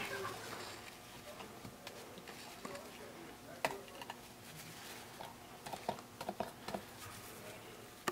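Faint rustling of a Kimwipe tissue being handled and folded by hand, with a sharp click a little over halfway through and a few small ticks and taps later on.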